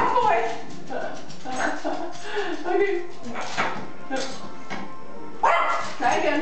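Yorkshire terrier vocalizing in excitement with barks and whines. A sharp, loud sound comes near the end.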